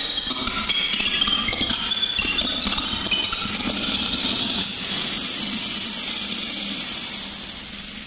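Electronic music from Reason software synthesizers: a dense, glittering texture of high pinging tones and small clicks. About five seconds in the tones drop out, leaving a hiss that slowly fades.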